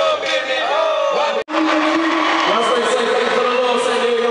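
Loud live concert sound: amplified voices and crowd chanting. The sound cuts out suddenly and briefly about a second and a half in, then steady held tones carry on.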